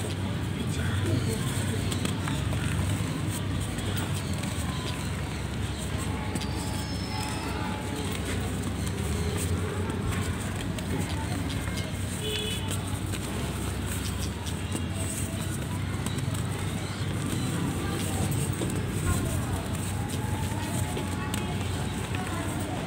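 Dry mud lumps crumbling and crunching in the hands, with fine crackles of grit falling, over a steady low background rumble.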